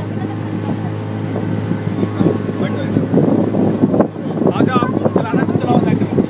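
Motorboat engine running steadily under way, a constant low hum, with wind buffeting the microphone.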